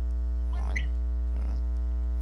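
Steady electrical mains hum, with two faint short sounds about half a second and a second and a half in.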